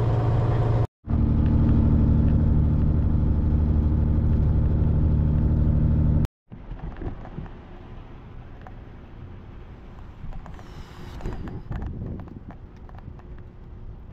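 Semi truck's diesel engine heard from inside the cab while driving, a steady low drone with a strong pitched hum, broken by a sudden cut about a second in. About six seconds in it gives way to much quieter outdoor noise with wind and faint scattered knocks.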